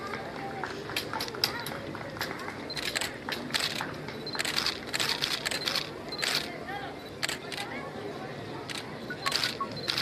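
Camera shutters clicking in quick bursts of several shots, over a low background murmur of voices.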